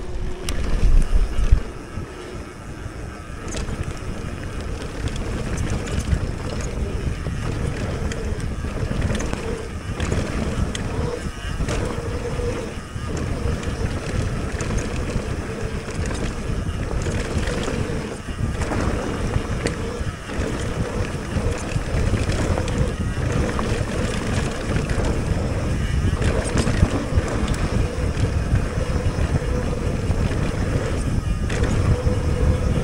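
Mountain bike being ridden fast on a dry dirt singletrack: steady wind rumbling on the bike-mounted camera's microphone, with tyres rolling over the dirt and short rattles and knocks from the bike over bumps. The wind is loudest in the first second or two.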